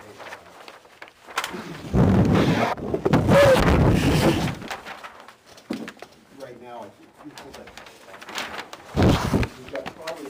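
Large paper plan sheets being rustled and handled close to a table microphone, loudest about two to four seconds in, with a shorter burst near the end.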